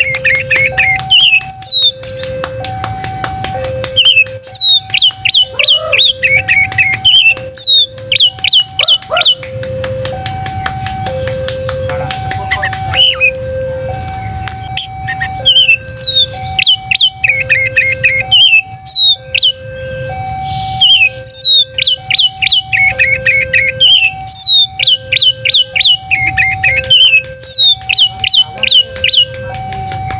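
Oriental magpie-robin singing at full volume: loud bursts of rapid, sharp repeated notes and whistled phrases, broken by quieter spells. A looping two-note background tune runs under it.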